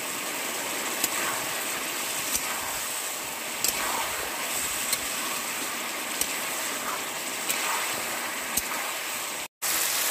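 Chicken frying in masala in a metal kadai, a steady sizzle, with a metal spatula clicking against the pan about once every second and a quarter as the pieces are stirred and turned.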